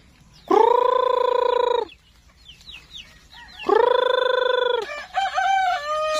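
A rooster crowing twice, each crow a long, steady call of about a second and a half, with faint high peeps from young chickens between the crows and softer wavering clucks near the end.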